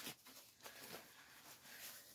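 Near silence, with faint soft rustling and a small click as a baby-doll outfit is handled.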